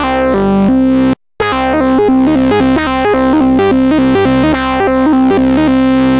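u-he Diva software synthesizer playing a biting lead/bass patch, dual oscillators through its Bite high-pass filter and a ladder low-pass, as a quick run of low notes, each with a falling filter sweep. The notes break off briefly about a second in, then resume.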